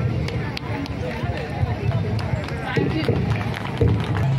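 Several women's voices chattering over one another, with scattered clicks and knocks.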